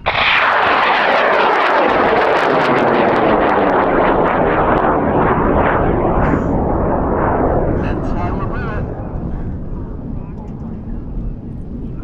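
Seven-motor cluster of high-power solid rocket motors on a large scratch-built rocket lighting at liftoff: a sudden loud roar full of crackle, with a sweep falling in pitch as the rocket climbs away. It fades over the last few seconds.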